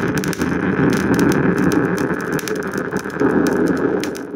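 The claimed black-eyed-kid 'communication frequency' sound: a loud, dense, noisy drone with no clear pitch, peppered with crackles.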